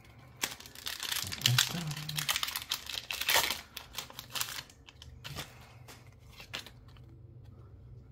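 A Pokémon card booster pack's foil wrapper crinkling and being torn open, loudest a little after three seconds in. Then quieter, scattered rustling and clicks as the cards are pulled out of the wrapper.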